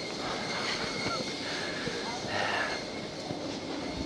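Airport baggage hall ambience: a steady background hum with distant, indistinct chatter and a few light clicks.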